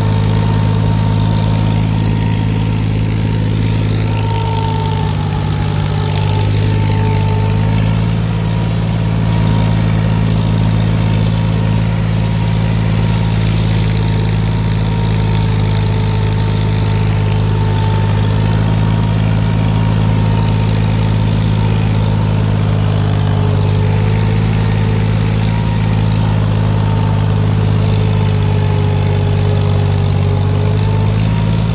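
A John Deere 5042D tractor's three-cylinder diesel engine running steadily under load while cultivating, heard from the driver's seat. The drone holds an even pitch and loudness throughout.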